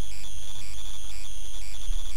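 A high-pitched electronic warbling tone, alternating between pitches several times a second, over a low hum.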